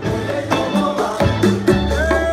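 Salsa music with hand-played conga drums, a quick steady rhythm of ringing, pitched open tones over a bass line.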